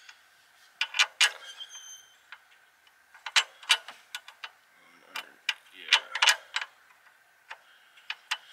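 Irregular sharp metallic clicks and clinks of a nut and washer being handled and fitted onto a bolt at a car strut-bar bracket, coming in three clusters, with a faint ring after one clink about a second and a half in.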